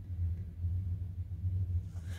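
Steady low hum running evenly throughout, with no other distinct sound.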